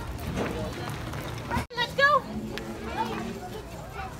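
Indistinct voices of people and children chattering in the background, with a low rumble on the microphone. The sound drops out abruptly a little before halfway, and short high calls in a child's voice follow.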